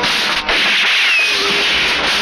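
A film soundtrack's dense, continuous rattle of rapid gunfire, with a brief break about half a second in.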